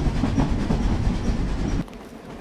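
Train running along the tracks: a steady low rumble that cuts off abruptly shortly before the end.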